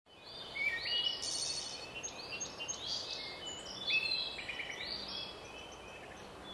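Several birds singing, a busy run of overlapping chirps and whistles over a faint steady outdoor background.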